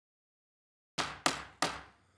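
Three sharp raps of a gavel in quick succession starting about a second in, each dying away briefly: the meeting being called to order.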